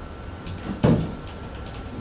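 A pause in speech through a handheld microphone: steady room hiss with a faint high whine, broken by one short, sharp sound just under a second in.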